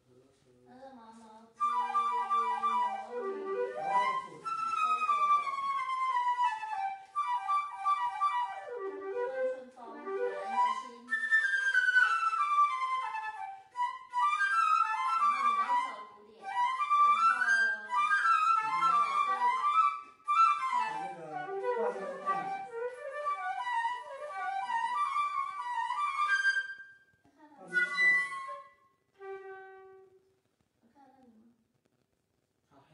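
Several flutes playing together in harmony, a melodic ensemble passage that starts about a second and a half in and stops shortly after 26 seconds, followed by a couple of brief notes near the end.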